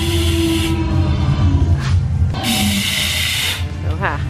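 Animatronic dinosaur spraying water from its mouth: two hissing sprays, the first cutting off under a second in, the second starting about two and a half seconds in and stopping sharply a second later, over a steady low rumble.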